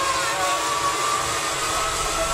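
Zip-line ride: a steady rush of wind and the whir of the trolley running along the steel cable, with a thin held whine through it.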